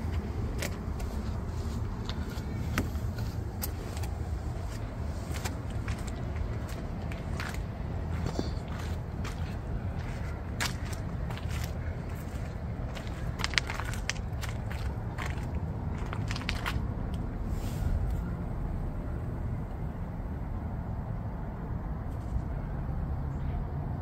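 Steady low outdoor rumble with many small clicks and scuffs scattered through it.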